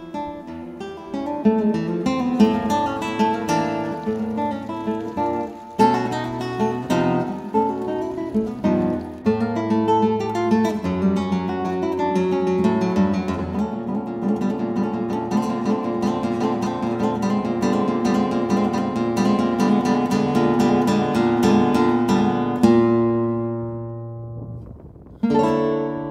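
Solo acoustic guitar music, plucked notes and chords with a run of fast repeated notes, ending on a chord that rings away about 23 seconds in; a new chord starts just before the end.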